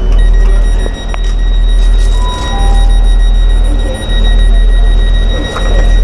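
Steady high electronic warning tone from a diesel train's open passenger door, over the loud low rumble of the train standing at the platform.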